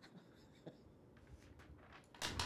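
Near silence: room tone, with a faint short click about a third of the way in.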